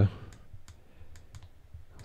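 Keys of a Yaesu FT-65 handheld transceiver clicking as they are pressed to step through its stored memory channels: several light, irregularly spaced clicks.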